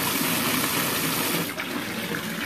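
Bathtub faucet running into a tub of thick bubble-bath foam, a steady rush of pouring water that turns a little softer about one and a half seconds in.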